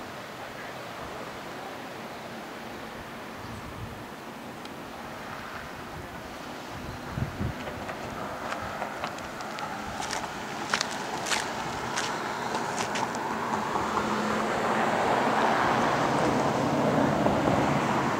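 Outdoor road-side ambience with wind on the microphone and a passing vehicle's road noise, which swells louder over the last few seconds. A few sharp clicks come about ten to thirteen seconds in.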